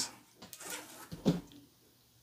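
Soft rustling and a few light clicks of a nylon NATO strap being pulled out from a watch's lugs and the steel watch case handled, over about the first second and a half.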